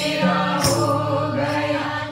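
A group of women singing a devotional song together in unison, holding long notes, with hand clapping and a sharp percussive strike keeping time.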